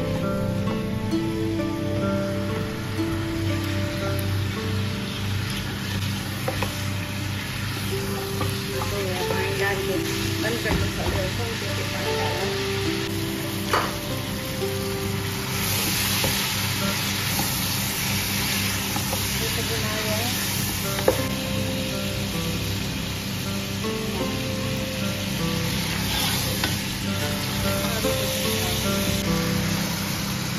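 Mutton pieces sizzling in hot oil in a pot as they are stirred with a spatula. The sizzle swells about halfway through and again near the end, over background music.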